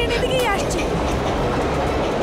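A train running along the tracks with a dense, steady rumble and rattle. A brief voice sounds at the very start.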